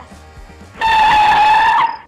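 A comic screeching sound effect, like tyres skidding, inserted as a surprise gag. It starts under a second in, holds one steady pitch at full loudness for about a second, then cuts off.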